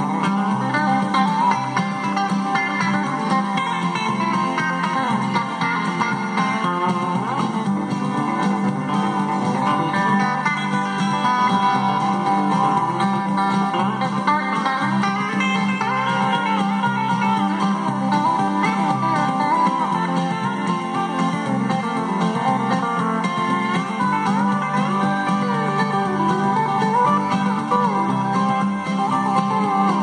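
Instrumental break of a country song: steel guitar and guitar playing, with no singing.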